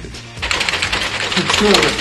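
Small tracked robot driving on carpet: a rapid, continuous mechanical clatter from its tracks and drive starts about half a second in. A voice is heard briefly near the end.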